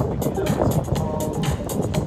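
Music with a steady beat playing loud through a Bose S1 Pro battery-powered PA speaker that has just been turned up.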